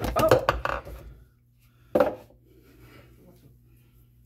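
Kitchen handling sounds of dishes and cupboards: clattering knocks in the first second, then a single sharper knock about two seconds in, with a low steady hum under the quiet that follows.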